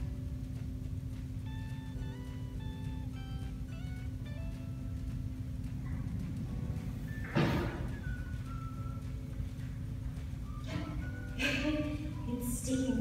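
Soft background music: a simple melody of short stepped notes over a steady low hum, with one short sharp noise about seven seconds in.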